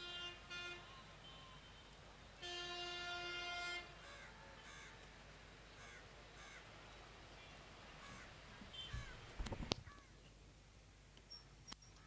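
Quiet outdoor ambience. Two long, steady horn blasts, one at the start and a louder one about two and a half seconds in, are followed by a string of short bird calls about a second apart and a few sharp thumps near the end.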